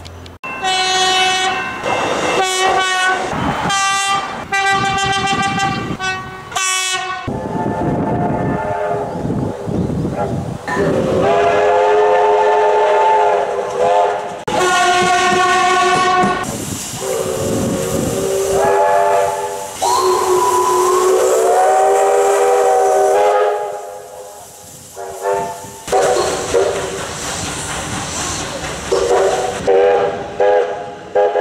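A series of different train horns, several-note chime horns, sounded one clip after another in short toots and long held blasts, each a chord of several pitches. In one long blast the pitch slides upward about two-thirds of the way through.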